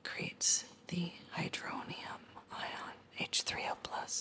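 A woman whispering; the words are indistinct.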